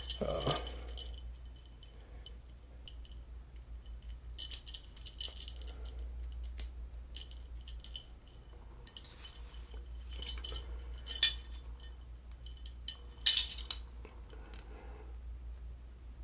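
A 4 mm white gold tennis chain's metal links clinking and rattling as it is handled and fastened around the neck. The clinks come in scattered bunches, the sharpest about eleven and thirteen seconds in.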